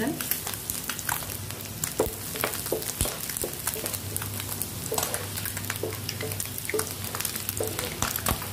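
Chopped garlic sizzling and crackling in hot oil in a non-stick pan alongside pieces of boiled egg white, with occasional short knocks from a wooden spatula stirring the pan.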